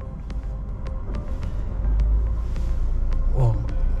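Car air conditioning blowing after being switched on: the airflow from the dashboard vent grows louder over the first couple of seconds, with a low rumble where the air reaches the microphone and a few small clicks. The air is strong, "very fast".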